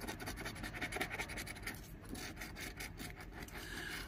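Edge of a metal scratcher coin scraping the coating off a scratch-off lottery ticket in quick, repeated strokes.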